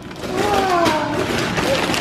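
Gift wrapping paper crinkling and tearing as a child pulls it off a present, with a drawn-out voice running over it from just after the start.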